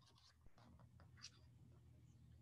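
Near silence: a faint low hum with a few soft clicks and rustles.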